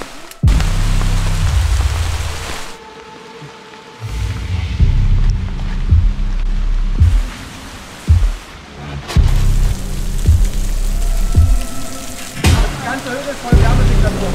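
Background music with deep bass swells that start and stop, and a few sharp low hits in the second half, over a steady hiss of rain.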